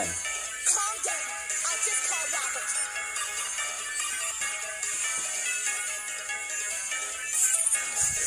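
Melodic rap song playing, with a vocal line over the beat.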